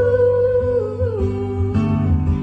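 A woman's voice holding one long sung note into a microphone, wavering slightly and then stepping down to a lower note about a second in, over strummed acoustic guitar accompaniment.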